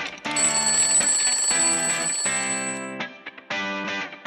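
Music with plucked guitar-like notes in short phrases. Over it, a mechanical alarm clock's bell rings from just after the start and stops about three seconds in.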